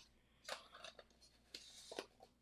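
Near silence with a few faint handling clicks and a soft scrape near the end: a lens hood being twisted back onto a camera lens.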